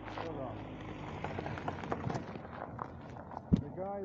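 A man's voice speaks briefly at the start and again near the end, over steady background noise with a low hum. One sharp knock comes about three and a half seconds in.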